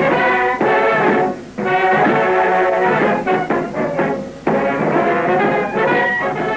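Brass-led band music playing phrases of held notes, with short breaks about a second and a half and four and a half seconds in.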